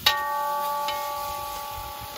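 A metal cooking pot knocks against the rim of a large metal kazan, which rings out in several clear bell-like tones that slowly fade.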